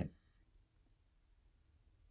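Near silence: quiet room tone, with one faint, short click about half a second in.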